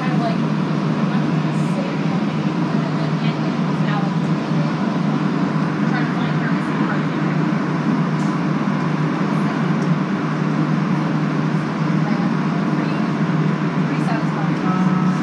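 Steady low hum inside a Montreal Metro Azur (MPM-10) car as the train comes into and stands at a station, with passengers' voices in the background.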